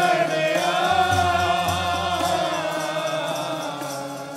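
Sikh kirtan: men singing a hymn together in long, wavering held notes over harmonium chords, with tabla underneath.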